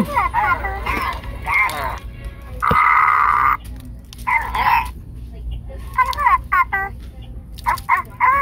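Petstages Babble Ball talking dog toy playing its recorded voice clips and sound effects through its small speaker: several short clips with pauses between them.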